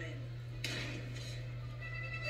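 A clink of tableware on the dining table a little over half a second in, with a short ring after it, over a steady low hum.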